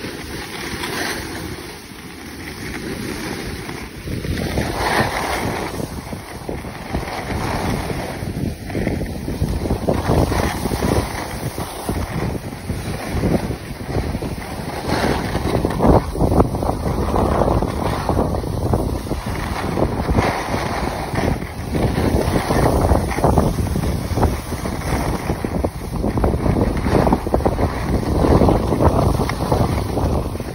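Wind buffeting the microphone of a phone carried by a skier moving downhill, mixed with the hiss and scrape of skis on packed snow. It is gusty and uneven, and gets louder from about four seconds in.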